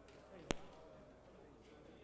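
Faint murmur of voices with a single sharp knock about half a second in.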